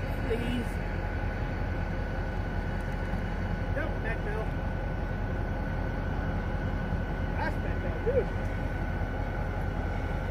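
Steady low rumble of distant diesel locomotives running, with a thin steady whine above it.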